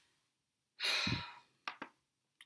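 A woman's disappointed sigh, one breathy exhale of about half a second, followed by two short clicks.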